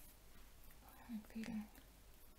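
A brief soft murmur from a woman's voice a little past a second in, over faint rustling of knitted yarn being handled.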